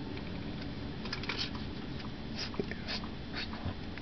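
Light handling noise: a small plastic solar dancing elf figurine being turned and shifted by hand on a wooden table, with a few faint scrapes and clicks.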